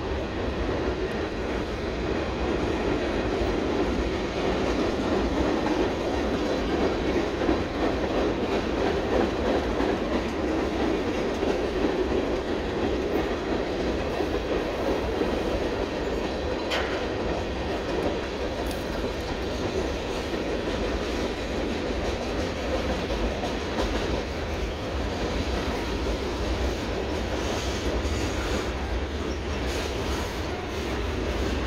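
Freight train cars, covered hoppers and boxcars, rolling across a steel railroad trestle in a steady, unbroken rumble.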